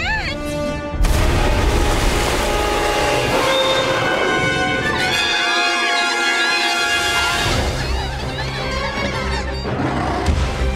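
Animated-cartoon soundtrack: a sudden loud rumbling crash about a second in, then dramatic music over a steady deep rumble. High warbling squeals run through the middle, the kind of sound made by the threat the creatures are hiding from as a giant sand serpent approaches.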